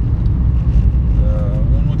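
Steady low rumble of a car driving, heard from inside the cabin: engine and road noise, with a man's voice starting near the end.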